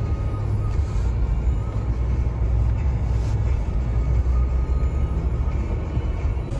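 Steady low rumble of a car's engine and tyres, heard from inside the cabin as the car rolls slowly forward.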